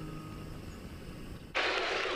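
Faint room tone, then about one and a half seconds in a sudden, steady rustling hiss of bedding: a sheet being shaken out and spread over a sofa bed.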